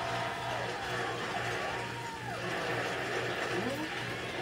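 Studio audience and contestants applauding, a steady wash of clapping with scattered voices, heard through a television's speaker.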